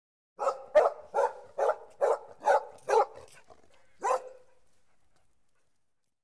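A dog barking about seven times in quick succession, roughly twice a second, then once more after a pause of about a second.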